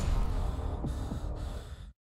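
The tail of a horror channel ident's sound effect: a low rumble with a hiss, dying away and cutting off to silence near the end.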